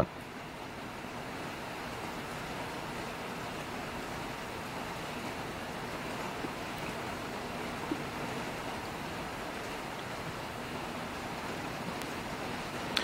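Steady, even rushing noise with no distinct events apart from two faint ticks about halfway through.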